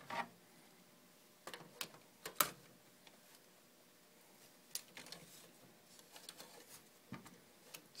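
Scattered light clicks and taps of a hard drive's plastic hot-swap tray being handled and slid into a drive bay of an Acer Aspire easyStore server. The clicks come irregularly, the loudest about two and a half seconds in.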